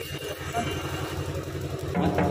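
A lull in the drumming: a low steady rumble of street noise with faint voices.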